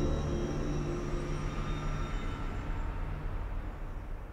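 Dark ambient intro soundtrack: a steady, noisy low rumble, with the held tones of the opening music dying away in the first moments.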